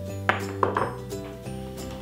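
Background music, with two sharp clinks of crockery in the first second as a bowl is handled and set down on the counter.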